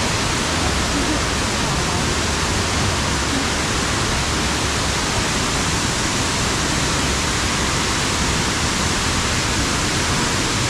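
Fukuroda Falls, a large waterfall partly frozen over, with water still pouring down its rock face: a steady, unbroken rushing.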